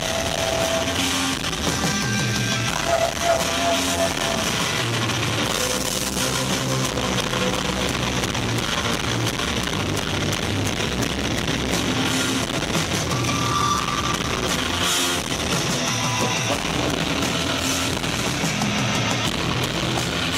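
Live rock band playing loudly, with electric guitar, bass guitar and drum kit over a steady beat.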